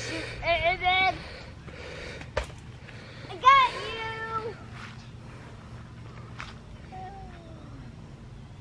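A young child's wordless vocal sounds: a short wavering call within the first second, a louder squeal about three and a half seconds in, and a falling call near the end. A single sharp click comes between the first two.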